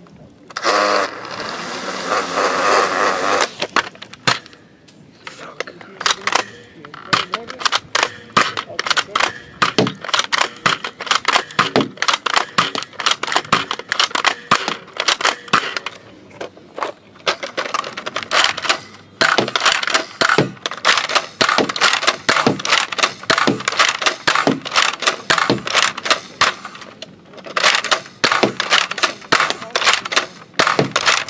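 A battery-powered plastic toy sounding after its red button is pressed: a dense burst of noise about a second in, then a long run of rapid, irregular clicks and crackles.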